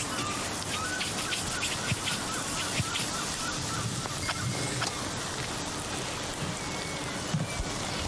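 Outdoor ambience: a steady hiss with small birds chirping now and then, and a few light clicks and taps.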